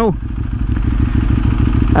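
Ducati 1098S L-twin engine idling steadily while stopped, heard from the rider's seat.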